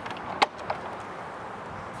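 A single sharp click about half a second in, then a much fainter tick, over steady low background noise.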